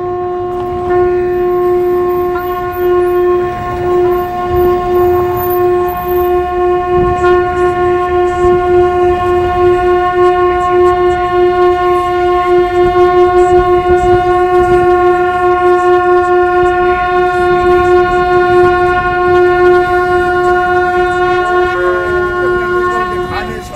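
A long, twisted shofar blown in one long, unbroken blast held on a single steady note, its loudness wavering a little.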